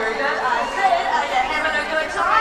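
Crowd chatter: many people talking at once.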